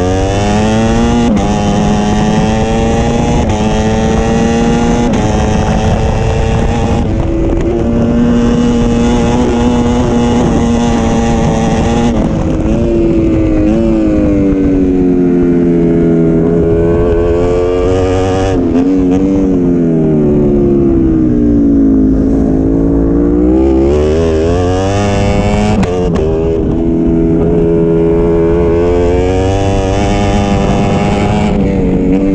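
Onboard sound of a Ducati Panigale V4 road bike's V4 engine lapping a track at speed. The revs climb with a drop at each upshift in the first half, then fall away into a corner and climb again as it accelerates out near the end.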